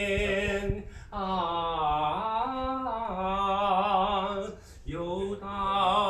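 A man singing a slow song, holding long notes that bend in pitch, with short pauses about a second in and near five seconds.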